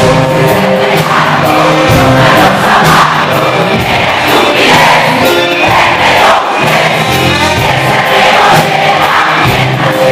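Live rock band playing loud, with a steady drum beat and guitar, as a male singer sings and the crowd sings along.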